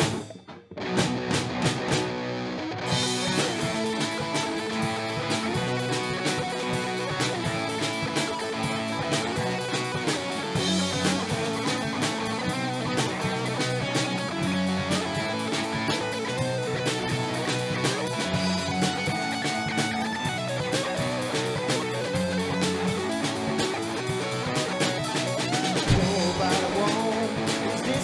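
Hard rock band playing an instrumental section without vocals: electric guitar over drum kit. The music drops out briefly just after the start and comes back muffled before the full band kicks in about three seconds in.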